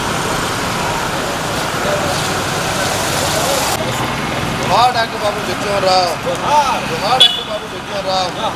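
Steady outdoor background noise like road traffic, which changes abruptly a little before halfway; from about five seconds in, several voices call out over it.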